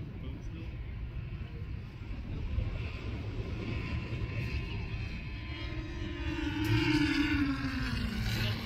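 Low steady rumble of wind or surf, with a passing motor's drone rising out of it from about halfway in, loudest near the end and then falling in pitch as it goes by.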